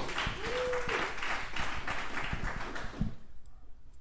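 Small studio audience applauding, the clapping dying away after about three seconds.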